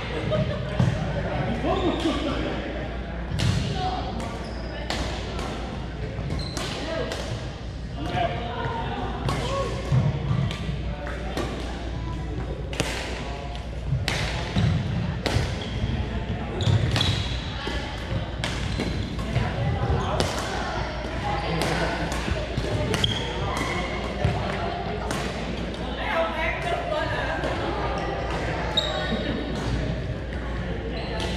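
Badminton rallies: sharp taps of rackets striking shuttlecocks, many of them at irregular intervals, over a background of players' voices in a large gym hall.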